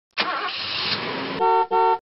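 A rushing noise lasting a little over a second, then a car horn honks twice in quick succession.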